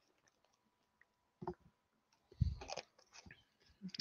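A person drinking from a bottle: a few faint gulps and swallows, the loudest about two and a half seconds in.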